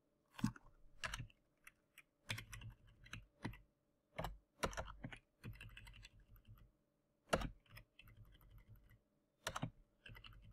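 Faint computer keyboard typing: irregular single keystrokes and short runs of keys.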